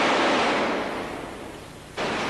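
A loud, steady rushing noise from a special-effects blast on a film set, fading away through the second half.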